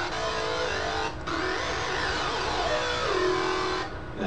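Native Instruments Massive software synthesizer playing the wobble bass patch: held synth notes, changing about a second in, with a sweep that rises and then falls back before the end.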